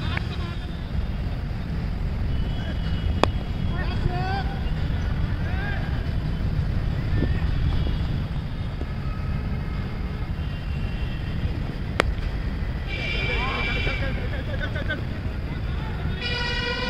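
Steady wind rumble on the microphone with faint, distant voices of players calling out on the field, and two sharp clicks, about three seconds in and at about twelve seconds.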